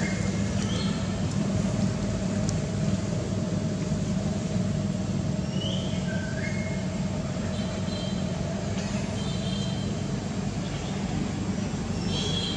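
A steady low motor drone, like an engine running nearby, with short high rising chirps now and then.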